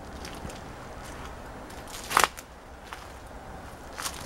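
Footsteps on dry leaf litter and twigs, with one short, loud crackle about two seconds in, over faint, scattered small crackles.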